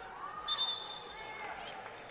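Referee's whistle blown once about half a second in, a short, sharp high tone that tails off, calling a foul, over the murmur of a crowd.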